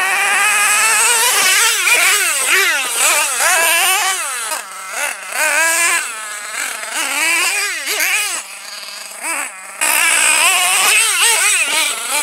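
Small nitro engine of an RC monster truck revving hard, its high-pitched note rising and falling again and again with the throttle. Near the end it drops to a lower idle for a second or two, then revs up again.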